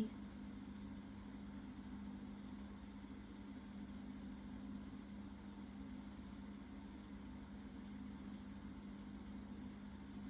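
Quiet room tone: a steady low hum that does not change.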